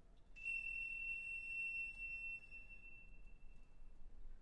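A single high, bell-like note struck once on orchestral metal percussion about half a second in, ringing and fading away over about three seconds.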